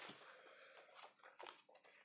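Near silence, with two faint rustles of paperback comic book pages being handled and turned, about a second and a second and a half in.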